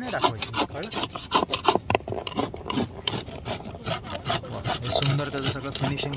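Farrier's rasp filing a horse's hoof in quick, even strokes, about three a second, easing off near the end.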